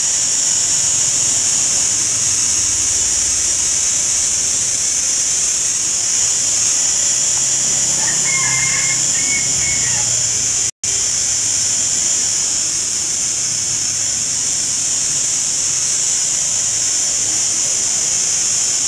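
Steady, shrill drone of cicadas, unbroken except for a momentary dropout about eleven seconds in.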